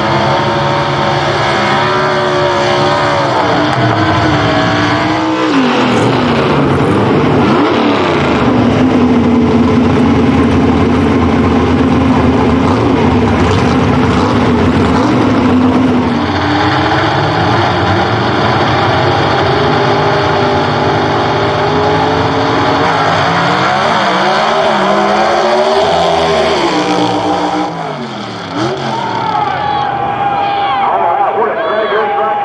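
Gasser drag cars' race engines revving at the starting line, then running loud at full throttle from about five seconds in, holding a steady pitch for several seconds. Near the end the engine pitch rises and falls repeatedly.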